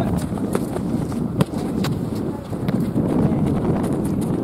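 Running footsteps of soccer players on a hard dirt pitch, with several sharp knocks, the loudest about a second and a half in, over wind buffeting the microphone.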